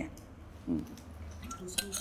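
Small clicks and clinks of a metal water bottle being handled, with a cluster of sharp clicks near the end as its cap is worked back on after a drink.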